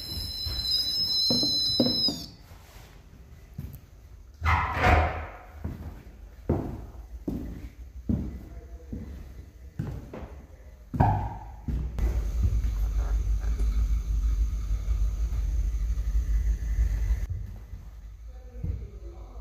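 Footsteps climbing a wooden staircase: irregular thuds and knocks, roughly one every half second to a second, with gear being handled. A high, shrill tone sounds for about two seconds at the start, and a steady low rumble takes over for the last several seconds.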